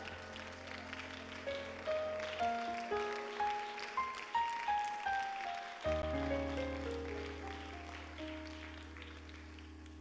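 Soft, slow keyboard music: held low bass chords under a line of single notes that steps upward and then back down, with a new bass chord coming in about six seconds in.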